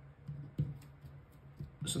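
Faint scratches and taps of a pen writing on paper, a few short strokes scattered through, over a faint steady low hum.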